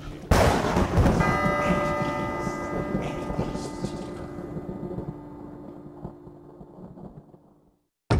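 A sudden loud boom, then about a second in a struck, bell-like tone rings out and slowly fades away to silence over several seconds: a dramatic sound effect on a produced soundtrack.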